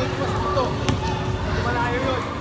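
A basketball bouncing on the gym floor, one sharp bounce a little under a second in, over the chatter of many children's voices in a large echoing gym.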